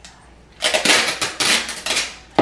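Clear packing tape pulled off the roll of a handheld tape dispenser, ripping loudly in several quick pulls that start about half a second in.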